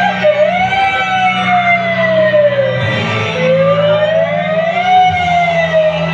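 A siren-like wailing tone that slowly rises and falls, about two long swells, over a steady low musical drone.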